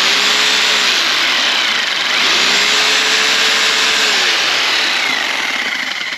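Einhell TC-RH 800 4F corded rotary hammer drill running freely in the air. Its motor pitch drops about a second in, rises again just after two seconds, drops once more after four seconds, and the motor winds down near the end.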